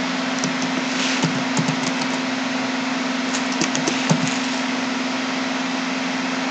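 Computer keyboard keys clicking a few at a time as a password is typed, over a steady microphone hiss and a low hum.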